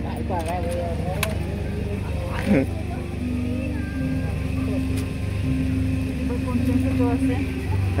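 Voices of a small group talking in the open, mostly in the first second, over a steady low engine hum from a motor vehicle running.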